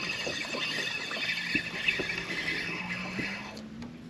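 A baitcasting reel being cranked steadily as a hooked speckled trout is reeled in, a high whir that fades and stops near the end.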